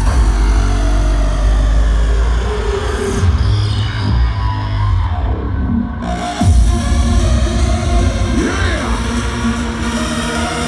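Hardstyle DJ set playing loud over a festival sound system. In the middle the high end is filtered away for a few seconds, then the full sound comes back with a heavy bass hit about six and a half seconds in.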